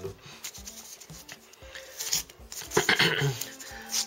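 Card-pack wrappers rubbing and rustling as a hand shuffles sealed packs across a table, with faint music underneath and a brief vocal sound about three seconds in.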